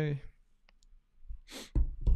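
A man's short voiced sound, then a couple of faint clicks, then a breathy exhale with a low thump about a second and a half in.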